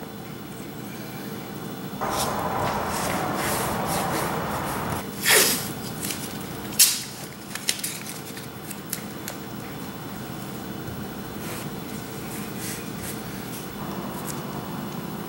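Blue painter's tape being pulled off the roll in a rasping stretch of about three seconds, then torn with two short, sharp rips, followed by a few light ticks as it is handled and pressed onto the trim.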